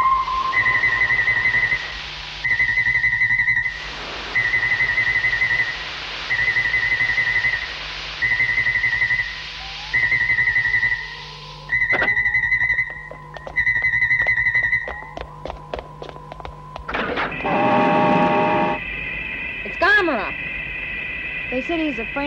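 Electronic science-fiction sound effects from a 1960s film soundtrack: a high beep pulses on and off about every two seconds over a steady electronic tone and hum, with a hiss that comes and goes. Toward the end a run of rapid clicks gives way to a brief buzzing electronic tone, then steady high tones.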